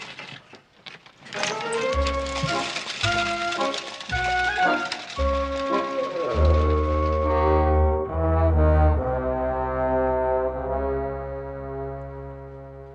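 Orchestral scene-change music with brass: a short melodic phrase over deep bass notes starts about a second in, then settles into long held chords that slowly fade.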